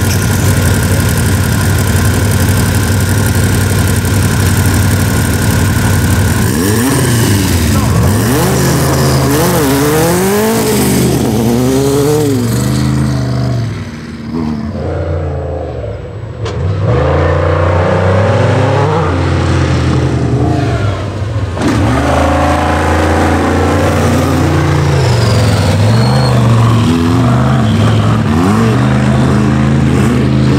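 Race engines of a methanol-burning sandrail and an Ultra4 Jeep Wrangler at full throttle. From about six seconds in, the engines rev up and down again and again, the pitch climbing and dropping every second or so, with a brief quieter dip around the middle.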